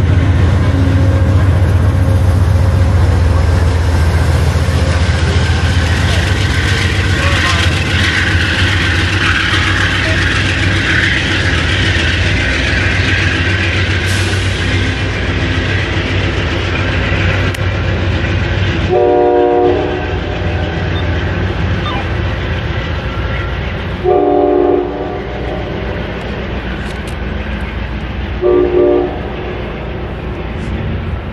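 A Shoreline East commuter train pulls out of the station: a steady low locomotive drone and wheel-on-rail noise that fade as the train leaves. A train horn then sounds three short blasts, the first about two-thirds of the way in and two more near the end.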